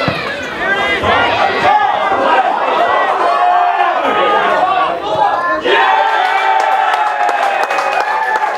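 Players and a small crowd of spectators shouting during play. A goal follows, and near the end a long held cheer rises over the voices.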